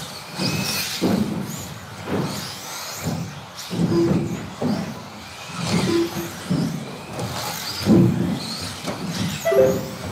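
Several electric 2wd stock RC buggies racing round an indoor track, their motors whining up and down in pitch as they speed up and slow. Repeated knocks and thuds come from landings and tyres on the track.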